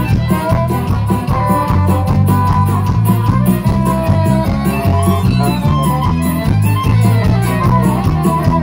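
Live band playing an instrumental passage: acoustic guitars and keyboard over a steady beat.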